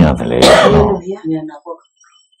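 A man speaking in Burmese, giving a sermon. About half a second in there is a harsh throat-clearing sound, and his voice breaks off before the end.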